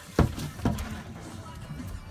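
Two sharp knocks on a fibreglass boat deck about half a second apart, the first the louder.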